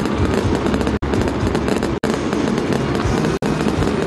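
Aerial fireworks going off in a dense, continuous barrage of bursts and crackling. The sound cuts out for an instant three times.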